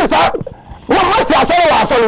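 Loud, emphatic man's speech only, in two bursts with a short break about half a second in.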